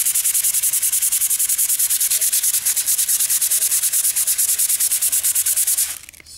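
Sandpaper rubbed by hand over cured epoxy wood filler on a wooden window sash, in quick, even back-and-forth strokes of about eight a second. The scratchy hiss stops abruptly at the very end.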